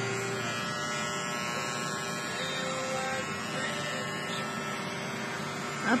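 Electric hair clippers running steadily against the scalp as a head is shaved, a constant buzzing hum.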